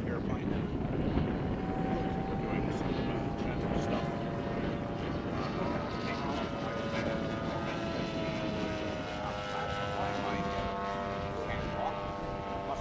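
Engine and propeller of a scale radio-control Cessna model airplane in flight, a steady drone whose pitch drifts slightly as the plane passes. Its tone stands out clearly from about a second and a half in.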